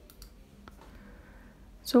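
Quiet room tone with a couple of faint, sharp clicks in the first second. Near the end, a voice says "So".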